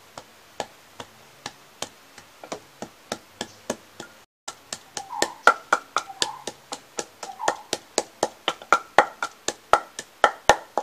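Wooden pestle pounding dry spices for a curry masala in a wooden mortar: sharp wooden knocks about three a second, then, after a brief dropout a little over four seconds in, faster and louder strokes of about five a second.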